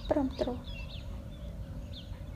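Birds calling: two short falling calls close together near the start, with faint small high chirps.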